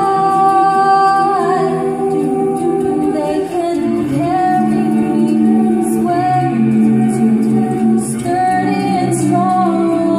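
Mixed jazz choir singing an a cappella chart, holding sustained chords that shift to new harmonies every second or two, with a brief break about three and a half seconds in.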